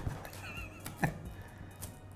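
A long kitchen knife is pressed down through the crust of a thick, rectangular homemade pizza and strikes the board with a knock about a second in. Quiet background music plays under it.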